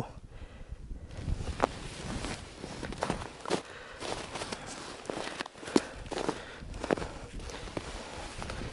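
Footsteps crunching on snow-covered ice at a walking pace, one short crunch with each step.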